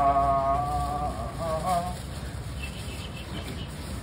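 A man's voice holding one long, slightly wavering buzzing note that bends and stops about two seconds in. After it there is a low, steady market background.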